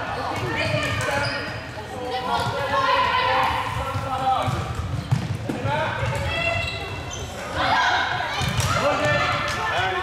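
Floorball game sounds in a sports hall: players' voices calling out over the clacks and knocks of sticks and the plastic ball and thuds of footsteps on the court floor, with one sharp crack about five seconds in.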